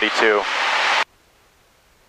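A man's voice trails off into a breathy hiss, then cuts off abruptly about halfway through, leaving only a faint, even hiss.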